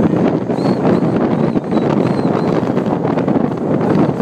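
Steady rushing wind and road noise from a car driving at speed, with wind buffeting the microphone. A few faint, short, high chirping tones come and go in the first half.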